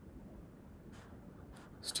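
Two faint computer mouse clicks, about a second in and half a second later, as the mouse button presses and releases while dragging a spreadsheet fill handle. A low, steady room hum sits under them.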